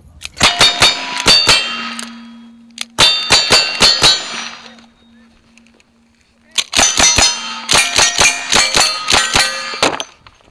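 Gunfire at close range with the ring of struck steel targets after each hit. Two strings of about five single-action revolver shots come first, then a quicker string of about ten lever-action rifle shots.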